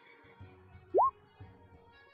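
Faint background music, with one short, quickly rising electronic 'bloop' tone about a second in.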